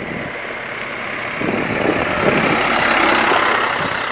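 A heavy vehicle passing close by, a rushing noise that swells to its loudest about three seconds in and then eases off.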